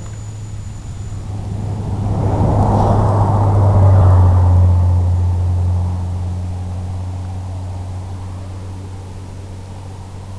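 Electric motors and propellers of a low-flying FPV aircraft, heard from on board: a steady low hum under a rushing noise that swells to a peak about four seconds in, then slowly fades.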